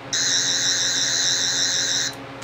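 Toy sonic screwdriver switched on, its tip lit green, giving a steady, high, slightly warbling electronic whine for about two seconds before it cuts off.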